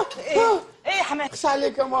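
A person's voice making short wordless sounds that rise and fall in pitch, then a few held notes stepping down.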